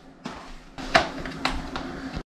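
Hard plastic clicks and knocks as a small device is worked onto a bicycle helmet, two sharp clicks standing out about a second and a second and a half in.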